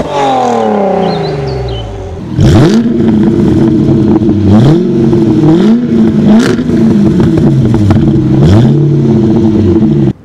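A Volkswagen Golf R32's VR6 engine dropping back from a rev, then, about two and a half seconds in, an Arden-tuned Jaguar XKR's supercharged V8 revved in quick blips, about six sharp rises and falls in pitch.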